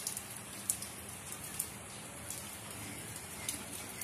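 Rain falling on a flat rooftop with standing puddles: a steady hiss with scattered sharper drip ticks.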